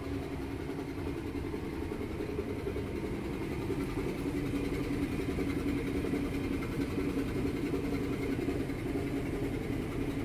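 Steady low mechanical hum and rumble of a supermarket interior, with a few held low tones, growing slightly louder about halfway through.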